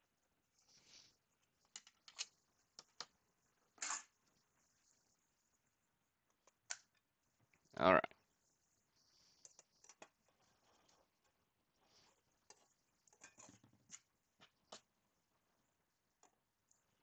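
Scattered faint clicks and scrapes of a hard clear plastic PSA graded slab being pulled apart by hand after being pried open with a screwdriver.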